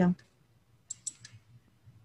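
A woman's voice finishes a sentence right at the start, then a few faint, short clicks about a second in, over quiet room tone.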